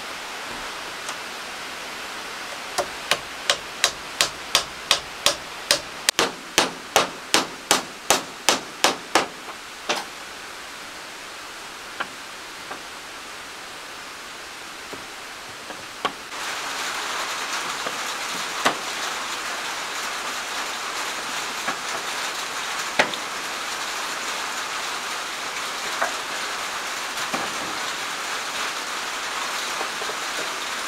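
A hammer driving nails into wooden planks: a quick, even run of about twenty strikes at roughly three a second, then only scattered single knocks. Past the middle a steady hiss comes in and stays, with an occasional knock over it.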